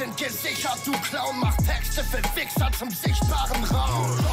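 German-language hip-hop track: a male rapper rapping over a beat, with deep bass notes that slide downward several times.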